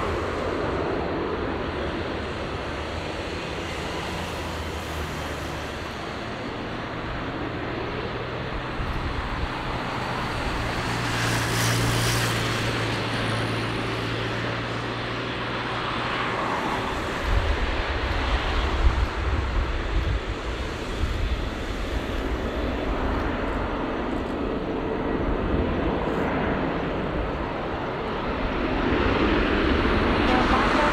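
Boeing 737 MAX 8 jet's CFM LEAP-1B turbofan engines at takeoff power as the airliner rolls down the runway and climbs away. The sound is a continuous jet roar, with a deeper rumble joining about halfway through, and it grows louder near the end.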